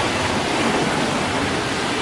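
Steady rush of water splashing from a resort pool's spouts and bubbling jets.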